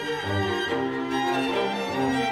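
A string ensemble of violins and a cello playing together, with held bowed notes that move from one to the next and the cello sounding low notes beneath.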